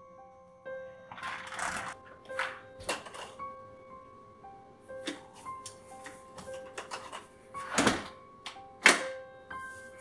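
Soft keyboard music with sustained notes, under the rattle of keys in a front-door lock and the door being opened. Later comes a run of sharp clicks and knocks from the door and its latch, the loudest two about eight and nine seconds in.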